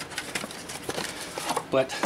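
Small cardboard oil filter box being handled and opened and the new oil filter slid out: faint rustling with a few light taps.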